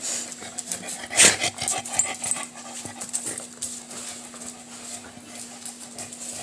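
A dog moving about right over the microphone, making irregular short noises and clicks, with one louder burst about a second in.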